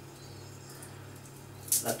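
A faint, steady low hum with a few faint ticks, then a man starts speaking near the end.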